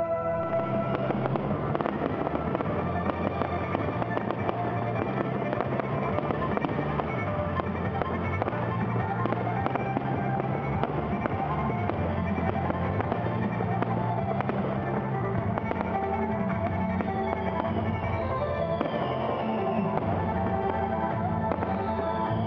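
Fireworks finale barrage: dense, continuous crackling and bangs from about a second in, with several whistles falling in pitch near the end, over music playing underneath.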